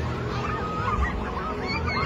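Many short, wavering cries and shouts from people over a steady low rumble as a building collapses in an earthquake.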